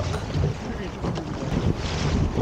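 Wind buffeting the microphone, with water rushing along the hull of a small open wooden sailboat, an enlarged Ross Lillistone First Mate, heeled over under sail.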